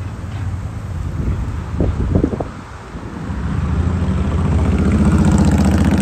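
Audi R8 sports car engine running as the car pulls slowly out to the junction, its low rumble growing louder over the last three seconds.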